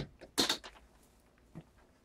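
Metal parts of a door knob lock clicking against the door as the knob is fitted to the latch: one sharp clack about half a second in, then a few faint ticks.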